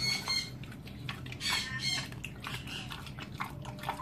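Pet pig eating soft wet food from a stainless steel bowl: chewing with irregular clicks of snout and food against the metal.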